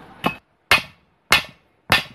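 Four sharp hammer blows, a little over half a second apart, struck on the top of a dragon fruit support post fitted with a tyre ring.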